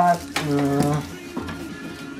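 A man's drawn-out hesitation sound "eee", held on one pitch for about half a second, then quiet background music.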